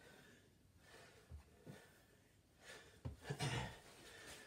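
Faint sounds of a man exercising: soft thumps of hands and body on a carpeted floor, then one louder breath of effort about three seconds in.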